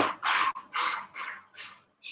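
A man breathing out in four short, breathy puffs, about two a second, each shorter and fainter than the last.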